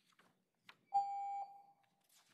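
A single electronic beep from the meeting's speaking-time clock: one pitched tone held for about half a second, then fading away. It is the signal that a speaker's time has run out.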